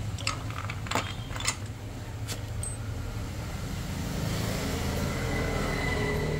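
A steady low rumble with a few sharp clicks in the first two and a half seconds, and a faint thin whine coming in near the end.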